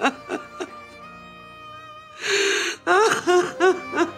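A woman sobbing: short catching sobs at the start, a loud breathy cry a little past halfway, then a run of gasping sobs, over slow background music with held notes.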